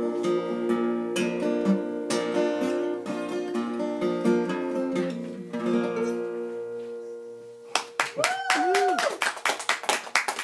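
Acoustic guitar fingerpicking the closing instrumental bars of a folk ballad, the last notes dying away about seven seconds in. Then a burst of applause, with a voice calling out briefly.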